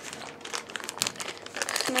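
Plastic bag of Yamamoto soft-plastic baits crinkling as it is handled, a run of irregular crackles that grows denser near the end.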